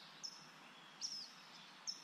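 Faint chirps of a small bird, three short calls each falling in pitch, spaced a little under a second apart, over a low background hiss.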